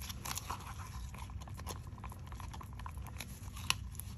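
Wooden stir stick scraping and clicking against the inside of a plastic mixing cup of resin: a run of small irregular scrapes and ticks, with one sharper click near the end.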